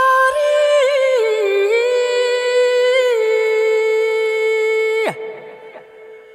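Slow, wordless solo melody in a jazz track: long held notes that slide smoothly from one pitch to the next, ending in a quick downward fall about five seconds in, after which the music goes quiet and sparse.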